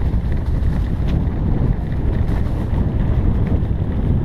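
Wind rushing over the microphone of a camera on a moving mountain bike, a steady low rumble, with a few faint clicks on top.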